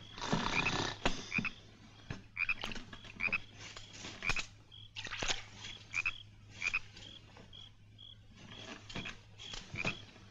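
Frogs croaking in short repeated calls, roughly one a second, with a thin high chirp repeating steadily over a low hum.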